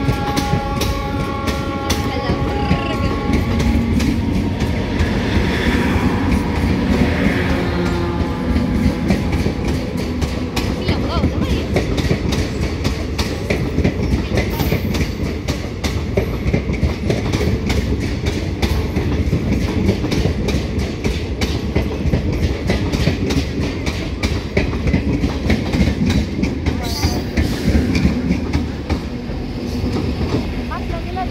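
A diesel-electric multiple unit (DEMU) train passing close by, its wheels clicking rapidly and steadily over the rail joints over a continuous low rumble. A chord-like horn sounds for the first three seconds or so.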